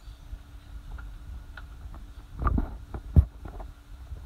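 Footsteps going down concrete stairs, picked up by a handheld phone with a low rumble of wind and handling on the microphone; a louder scuffing step comes about two and a half seconds in, and a sharp knock follows a moment later.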